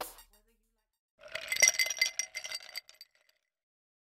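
The tail end of background music fades out, then about a second in comes a quick run of glassy clinks with bright ringing that lasts under two seconds and stops.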